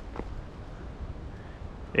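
Outdoor background with a low wind rumble on the microphone and a faint even haze, and one soft tap about a fifth of a second in.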